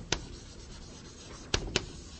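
Writing on a board: a sharp tap just after the start and two quick taps about one and a half seconds in.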